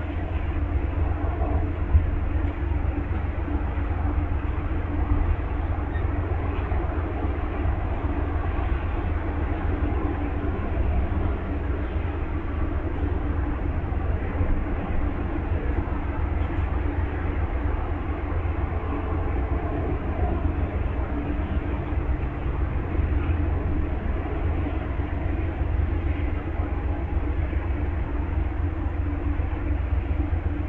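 Standing diesel-hauled passenger train idling: a steady, unchanging low rumble with a constant hum. A brief knock comes about two seconds in.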